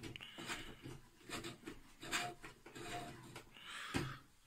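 Soft irregular rubbing and scraping as hands turn the metal focuser knob of a small vintage Skybolt Yamamoto 50 mm refractor, moving its drawtube in and out.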